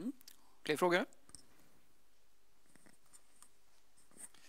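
A single short spoken sound, a brief word or murmur, about a second in. Then quiet room tone with a few faint clicks.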